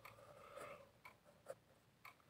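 Faint scratching of a pen writing on paper in a notebook, stroke by stroke, with one sharper tick about one and a half seconds in.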